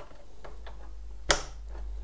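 Side brush of an Ecovacs Deebot robot vacuum pressed onto its drive hub, snapping into place with one sharp plastic click about a second in, after a few faint ticks of handling.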